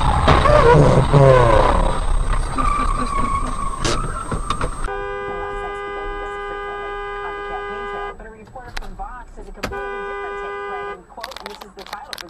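Car horn held in two long blasts, the first about three seconds and the second about two, with voices and car noise before and between them.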